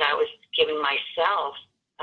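A woman speaking in short phrases, her voice thin and narrow-sounding as over a telephone or call connection.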